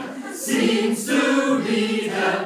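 Choir singing held notes together, growing louder about half a second in, with sharp 's' sounds about half a second and one second in.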